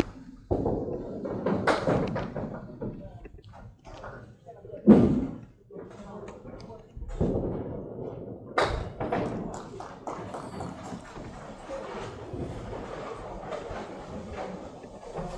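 Candlepin bowling alley sounds: wooden knocks and thuds of ball, pins and pinsetter, the loudest a heavy thud about five seconds in, over a murmur of voices in a large hall.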